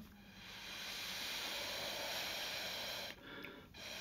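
Breath blown through a drinking straw onto wet acrylic paint, spreading a poppy petal: a steady hiss lasting about three seconds, then a short pause and a second blow starting near the end.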